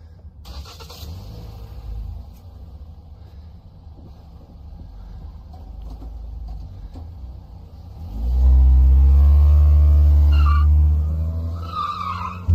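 A car engine running low for several seconds, then about eight seconds in it revs up sharply and holds at high revs as the car accelerates hard away across the lot.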